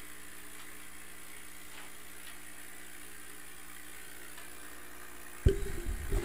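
Steady low hum with a few even tones from the running laser engraver setup. About five and a half seconds in, a sudden loud clatter of knocks as the small focusing block is set down on the bed under the laser module.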